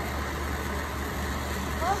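Steady hiss of a gas torch flame heating a gold ingot on a charcoal block. A woman's voice starts just at the end.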